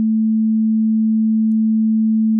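Logic Pro ES2 software synthesizer holding a single note as one steady, pure tone, low in pitch, with its key held down so the volume envelope sits at its sustain level.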